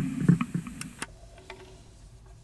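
A few dull thumps and sharp clicks from a mini ukulele being handled just after playing, picked up by a clip-on pickup and heard through a Roland amp. The sound fades away over the second half.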